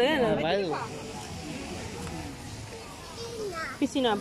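A child's high, sing-song voice in the first second and again near the end, with quieter outdoor background noise between.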